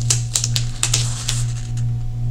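Paper sticker strip being laid and pressed onto a planner page: a run of small crackles and taps, over a steady low hum.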